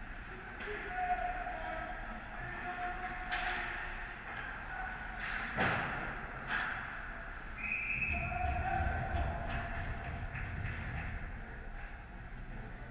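Ice hockey play echoing around an indoor rink: a few sharp knocks of puck and sticks, the loudest about halfway through, over a steady echoing hum, with a few distant held calls from players.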